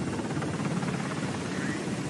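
Helicopter rotor and engine running steadily with a fast, continuous chop while the aircraft sits on the ground.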